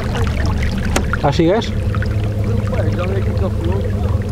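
Fishing kayak under way, water washing along the hull over a steady low drone.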